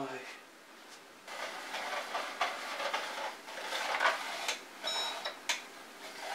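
Handling of loose metal hardware in a plastic tool case: irregular rustling and knocking, with one short metallic clink about five seconds in.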